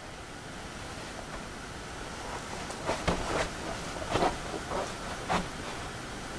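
Steady hiss, growing slightly louder, with a handful of short soft knocks in the second half.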